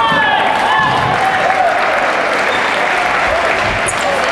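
Applause from teammates and spectators, steady clapping, with a few shouted voices cheering about a second in.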